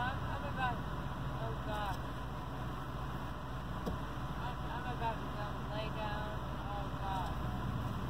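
A car engine idling: a steady low hum throughout, with faint, indistinct voices over it now and then.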